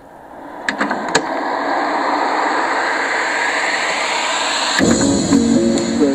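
Song played through a homemade Bluetooth speaker: a swelling, rising noise builds for nearly five seconds, then a melody of separate notes with bass kicks in.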